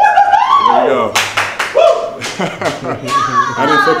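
A man's voice in high-pitched exclamations without clear words, with a quick run of about five sharp hand claps about a second in.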